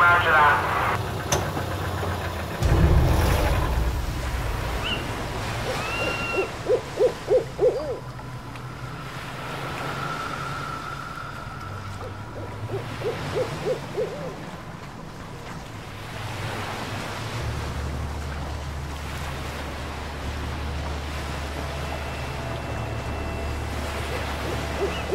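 An owl hooting in two quick runs of four or five hoots. There is a brief low rumble near the start and a steady low hum through the second half.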